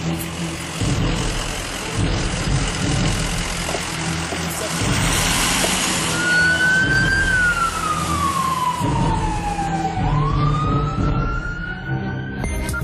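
Siren of a civil protection rescue vehicle, over the rumble of the vehicle moving off. About halfway through it holds one pitch, then slides slowly down and rises again near the end.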